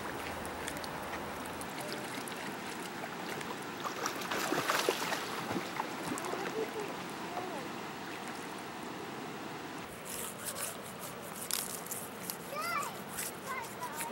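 River water running over stones, with splashing as a whole salmon is rinsed in the shallows. Sharp clicks come in over the last few seconds.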